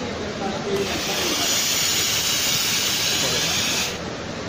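Steam iron fed by an electric steam boiler releasing steam: a steady hiss that starts just under a second in, runs about three seconds and cuts off sharply near the end.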